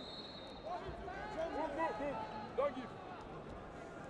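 Short shouted calls from voices around the mat, over a steady crowd murmur in an arena hall. A brief, thin, high steady tone sounds at the very start.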